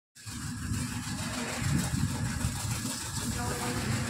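Pressure washer running: a steady low motor-and-pump drone with the hiss of its water jet spraying against a motorcycle.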